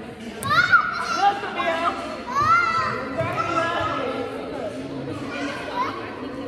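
Young children's voices in a large hall: high-pitched squeals and calls, loudest about half a second in and again around two and a half seconds, with adults talking underneath and a sharp click near the start.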